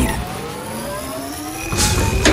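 Sci-fi power-up sound effect for a glowing circular robotic mechanism: several tones rise slowly together in a whine over a low rumble, with a short burst of hiss near the end.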